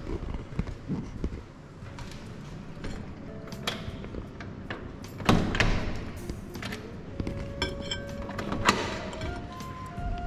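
A metal-framed glass door being handled and opened: knocks and clicks from the pull handle and frame, with a loud thunk about five seconds in, a short rattle near eight seconds and another knock just before the end.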